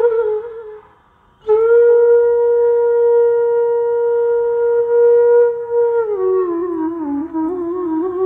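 Bansuri (Indian bamboo flute) playing a phrase of raga Jhinjhoti. A brief phrase stops for about half a second, then a long held note follows, and about six seconds in the line slides down in small ornamented steps and climbs again.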